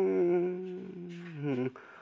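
A voice holding one long note in Dao 'pa dung' folk singing, unaccompanied. The pitch slides down and the note fades out shortly before the end.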